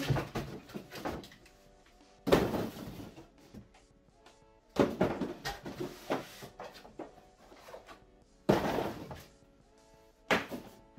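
Cardboard packaging pulled out of a large carton and thrown down: three sudden loud cardboard clatters, about two, five and eight and a half seconds in, each dying away, with lighter handling noise between. Faint music plays underneath.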